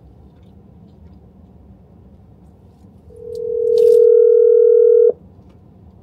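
A phone's electronic call tone: one steady mid-pitched beep that swells in about three seconds in, holds for about two seconds and cuts off suddenly. A short click is heard as it reaches full level.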